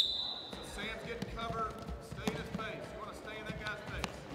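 Athletic shoes squeaking and thudding on a hardwood gym floor as players shuffle side to side in a lateral reaction drill, with voices in the background. A short, sharp whistle blast sounds right at the start and is the loudest sound.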